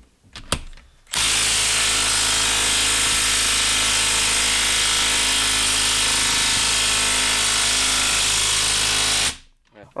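Makita brushless half-inch mid-range impact wrench hammering steadily as it drives a large lag screw into a wooden log. It starts about a second in, runs without a break for about eight seconds, and stops abruptly shortly before the end.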